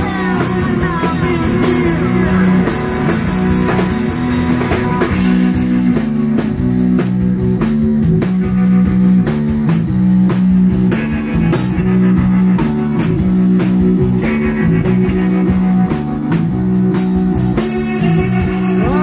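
Live rock band playing: a drum kit keeping a regular beat under a repeating bass-guitar line and electric guitars.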